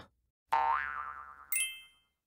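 Cartoon 'boing' sound effect: a springy tone that rises, then wobbles up and down in pitch as it fades, followed about a second in by a short, bright ringing ding.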